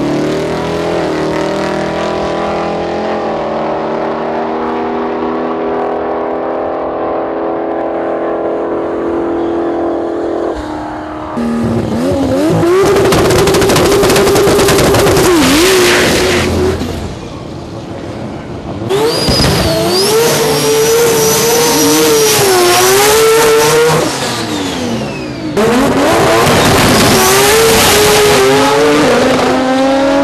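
Drag-racing cars at a dragstrip: an engine idling steadily for about ten seconds, then loud full-throttle runs with engines revving up and down and tyre squeal, starting sharply three times.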